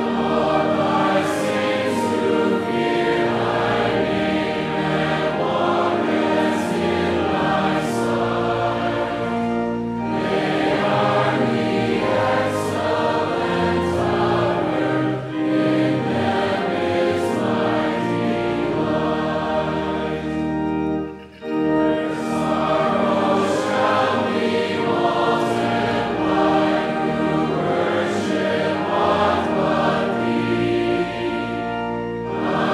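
A congregation singing a psalter hymn together with organ accompaniment, steady sustained notes with one brief pause about two-thirds of the way through.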